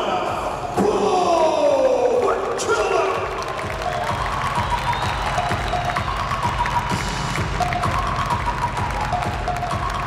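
Arena PA music with a pounding low beat and electronic effects. A long downward swoop comes in the first few seconds, then held and stepped synth tones.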